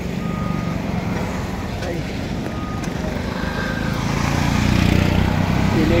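Road traffic: vehicle engines, a truck among them, with a low rumble that grows louder over the last couple of seconds as they come closer. Three short high beeps sound in the first half.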